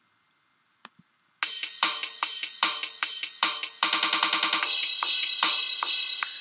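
GarageBand Rock Kit software drums playing back a programmed rock beat at 150 beats per minute: crash cymbals with kick and snare hits on a steady pulse, and a quick snare roll a little before the middle. A faint click comes just before the playback starts.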